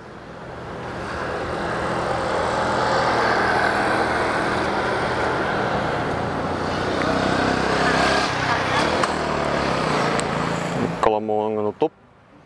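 A motor vehicle's engine running close by with a low hum, swelling up over the first two seconds, holding steady, then cutting off abruptly about a second before the end.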